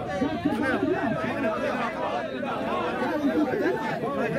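Only speech: several people talking at once in close conversation, their voices overlapping.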